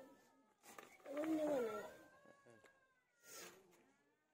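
A cat meowing once, a single drawn-out call that rises and falls, about a second in. A short scratchy noise follows near the end.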